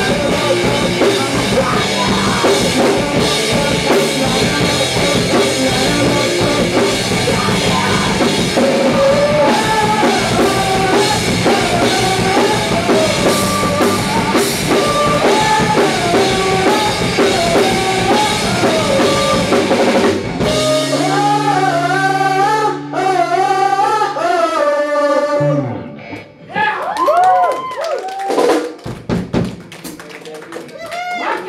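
Live rock band playing a song with drum kit and electric guitars. About two-thirds of the way through, the drums stop and a chord is held and rings. Bending, sliding notes with short gaps follow near the end.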